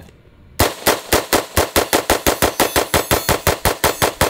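CMMG Banshee AR pistol in 4.6x30mm fired rapidly, a string of about two dozen shots at roughly six a second, starting about half a second in.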